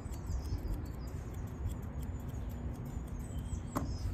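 Small birds chirping in short high calls, over a steady low rumble of wind on the microphone, with scattered faint sharp clicks.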